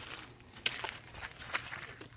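Footsteps on dry, gravelly ground strewn with sticks: a few light crunches, two sharper ones about a second apart.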